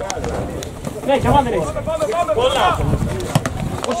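Men's voices calling out on a football pitch, with a steady low rumble underneath.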